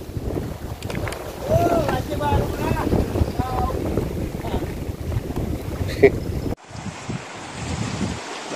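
Wind buffeting the microphone in a low rumble, with voices talking faintly under it a couple of seconds in. The rumble drops away abruptly near the end.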